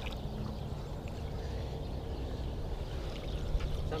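Steady low rumble of water moving around a fishing boat, with no distinct events.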